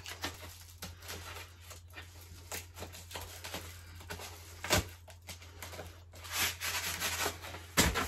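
Scissors snipping open a plastic shipping mailer, a run of small cuts with plastic crinkling, one sharper snip about five seconds in. Near the end comes a louder rustle of plastic and paper as the inner envelope is pulled out.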